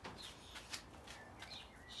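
Faint songbird chirps: short high-pitched calls repeating every half second or so, with a couple of light clicks.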